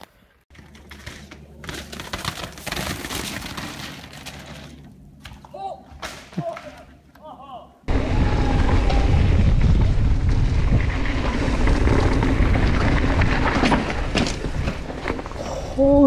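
Wind buffeting a helmet-mounted action camera's microphone, with tyre and trail noise from a mountain bike descending fast; it starts suddenly and loud about eight seconds in. Before that there are quieter scattered knocks and rustling.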